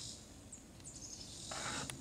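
Quiet woodland ambience with two short, high chirps about half a second apart.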